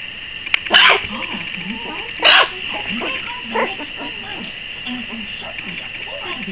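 A four-week-old Zu-Chon (Shih Tzu × Bichon Frise) puppy giving three short barks, about a second and a half apart.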